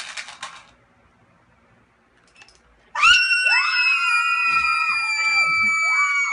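Several young people screaming together in fright, high-pitched and held: a near-silent pause, then the screams break out about three seconds in, voices joining one after another and lasting about three and a half seconds.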